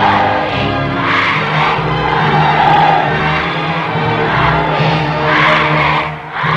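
Military band music: brass and wind instruments playing sustained chords.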